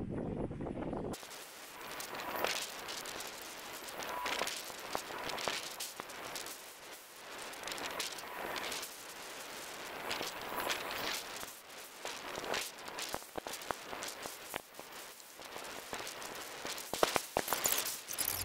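Wind buffeting the microphone, played back sped up twenty-fold so that it comes out as a dense, rapid crackle of pops that sounds like firecrackers, starting about a second in.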